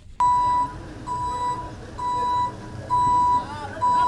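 Vehicle reversing alarm beeping: a single high electronic tone repeating evenly, about half a second on and half a second off, five beeps in all.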